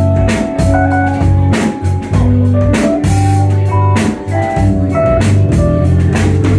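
Live band playing an instrumental passage of a song: drum kit, electric bass, electric guitar and organ-like keyboard, with no singing. Sustained bass notes sit under held keyboard and guitar notes, with repeated drum hits throughout.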